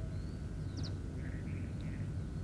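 A few faint, short bird chirps, a quick pair about a second in, over a steady low background rumble of outdoor ambience.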